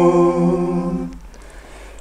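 Male a cappella voices, one singer layered in four-part harmony, holding the last note of a chorus line, which fades out just over a second in.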